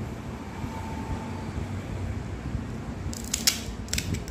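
Crisp fried puri shells cracking and crunching, heard as a few sharp, short cracks near the end over a steady low background rumble.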